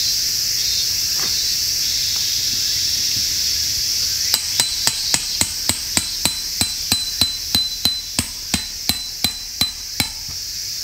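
A hammer driving a tent peg into the ground: about eighteen quick, evenly spaced strikes at roughly three a second, starting a little before halfway through, each with a short metallic ring. A steady high hiss of insects runs underneath.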